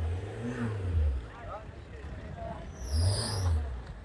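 Wind buffeting the microphone: a low rumble that comes in two gusts, the first easing about a second in and the second about three seconds in, with faint voices of people around.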